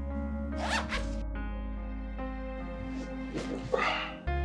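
Soft background music, with a zipper on clothing pulled in a short rasp about a second in and another brief rasp near the end.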